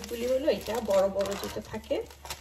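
A woman talking, with some crinkling of a plastic packet.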